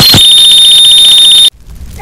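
A loud, high-pitched electronic alarm tone with a fast flutter, used as an edited-in comic sound effect. It holds for about a second and a half and then cuts off suddenly.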